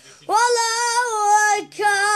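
A boy singing solo, unaccompanied, a long held note that starts about a quarter second in, then breaking briefly and starting another note near the end.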